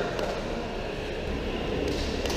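Steady background rumble with a faint tap or two near the start.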